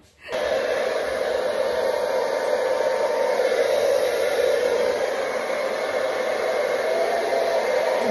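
Hand-held hair dryer blowing on wet hair, switching on suddenly about a third of a second in and then running at a steady pitch.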